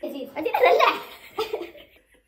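Women laughing: a long burst, then a shorter one about one and a half seconds in.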